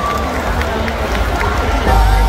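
Large stadium crowd cheering and calling out: a dense din of many voices, over a steady low rumble.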